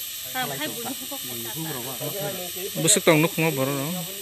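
A man talking steadily, with the loudest stretch about three seconds in. A faint steady high hiss sits underneath.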